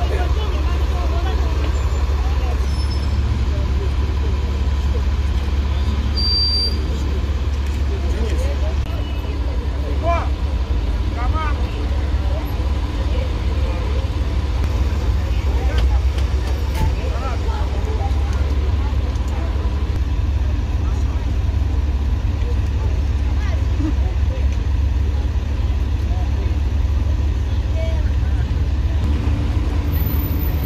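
Steady low rumble of idling vehicle engines and street traffic, with indistinct voices in the background.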